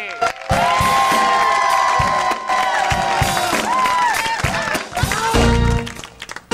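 A studio audience cheers and whoops, with long held shouts, over the start of a backing track. About five seconds in, a hip-hop beat with heavy bass comes in.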